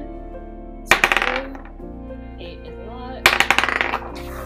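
A die rolled twice across a hard tabletop, each roll a quick clatter of clicks lasting about half a second, one about a second in and one near the end.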